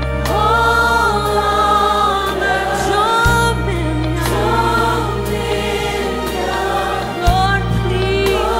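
Gospel choir singing a slow worship song in sustained phrases over held low bass notes, the chord changing about three seconds in and again near the end.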